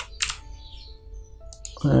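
A few sharp computer keyboard and mouse clicks: two close together at the start and a couple of faint ones near the end. Under them runs faint background music of held notes.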